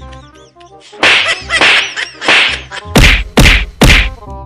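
A run of slap-and-whack hits over background music: a few softer swishing strokes in the first half, then three hard, sharp whacks close together near the end.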